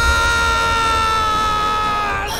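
A man's long, high-pitched scream of pain, held on one note and sinking slightly in pitch before breaking off near the end.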